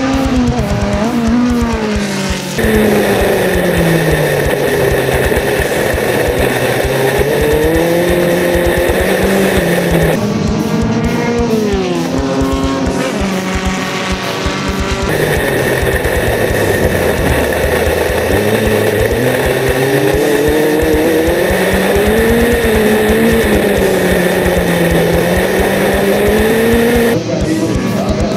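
Dirt-track formula race car engines at racing speed, their note repeatedly rising and falling as the drivers accelerate and lift, with music playing underneath.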